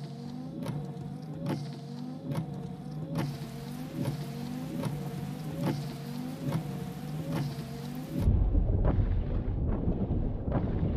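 Trailer score or sound design: a steady low drone under a rhythmic ticking pulse, about two ticks a second. About eight seconds in, a louder deep rumble takes over.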